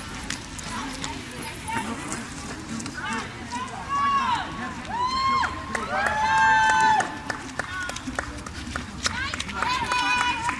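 Spectators cheering runners toward the finish with wordless high-pitched shouts and whoops. The calls rise and fall in pitch and come in a burst through the middle, the loudest just before 7 seconds. A few sharp clicks are scattered through.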